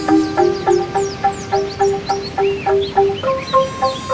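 Angklung music: shaken bamboo tubes playing a short repeated melody of quick notes, the tune stepping up in pitch about three seconds in. Birds chirp over it in short falling calls, above a steady hiss.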